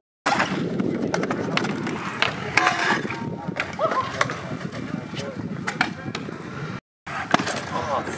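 Kick scooter wheels rolling and rumbling over skatepark concrete, with sharp clacks and knocks from the deck and wheels striking the surface and coping. The sound cuts out completely for a moment twice.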